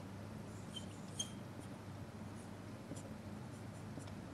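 Faint squeaks and scratching of a marker pen writing on a whiteboard, with two short squeaks about a second in and a few light ticks later.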